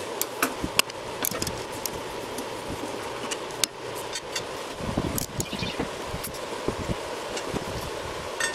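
Socket wrench clicks and metal clinks as a lawn tractor mower blade's nut is taken off the deck spindle and the blade lifted away, with a few dull knocks about five seconds in, over a steady background hum.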